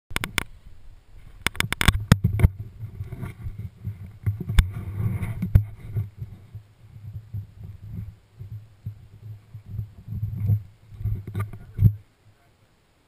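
Handling noise from a helmet-mounted action camera: sharp clicks and knocks of the camera housing and mount in the first few seconds, then irregular rumbling and rubbing on the microphone, with more knocks about five seconds in and near the end.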